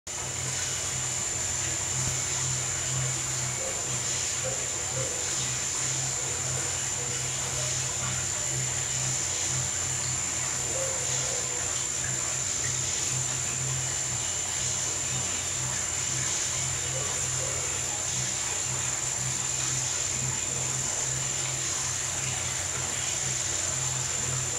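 Underwater treadmill running: a steady low motor hum with a thin, steady high whine above it.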